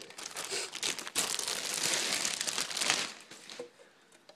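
Plastic packaging crinkling and rustling as it is pulled off a car amplifier, dying away about three seconds in.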